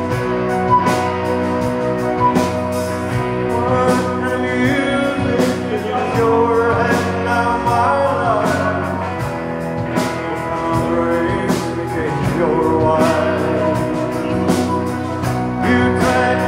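Live band playing: drums with sustained held chords, and a man singing lead into a microphone from a few seconds in.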